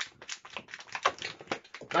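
Latex 260 modelling balloon being twisted by hand into a bubble and a pinch twist: a rapid run of short squeaks and rubbing clicks of the stretched latex.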